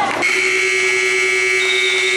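Gymnasium scoreboard buzzer sounding one long, steady, harsh blast that starts a moment in and halts play during a basketball game.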